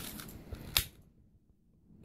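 A single sharp click about three quarters of a second in from a long-nosed butane utility lighter being triggered, after a few faint handling ticks.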